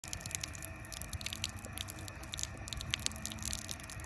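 Faint, irregular small clicks and wet sounds of drinking water.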